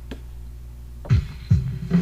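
Electronic keyboard backing track: after a low steady hum, a drum-machine beat comes in about a second in, with low kicks about two and a half a second under pitched keyboard notes.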